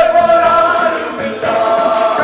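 A group of men singing a Malayalam worship song together into microphones, holding long notes, with a short break between phrases about a second in.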